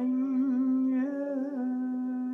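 A man's voice holds one long sung note, wavering in pitch at first and then steady, over the fading ring of a strummed acoustic guitar chord.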